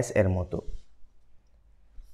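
A man's voice saying a short word, then a pause of over a second with a few faint clicks.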